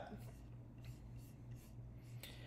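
Near silence: faint room tone with a steady low hum and a few faint ticks.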